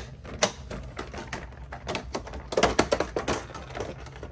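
Clear plastic packaging of a PanPastel pastel tray being opened by hand: a rapid, irregular run of sharp plastic clicks and crackles, busiest a little past the middle.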